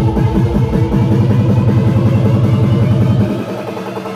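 Electronic dance music from a DJ's decks over a club sound system, with a fast, repeating bass pulse. About a second in the pulse gives way to a held bass note, and shortly after three seconds the bass drops out, leaving thinner, quieter music.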